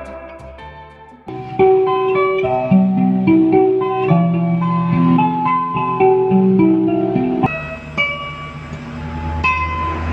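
Sasando, a plucked tube zither with a curved palm-leaf resonator, playing a melody of separate notes over a lower bass line. It comes in louder about a second in, and from about seven seconds a low steady hum sits under softer notes.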